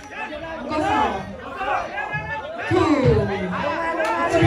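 Several voices talking and calling out over one another, growing louder near the end.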